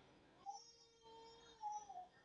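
Near silence: room tone, with a few faint, short pitched calls in the background, one about half a second in and a longer, steadier one in the middle.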